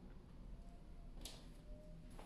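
A dog crying faintly in long, thin whines held at a steady pitch, with a single soft click about a second in.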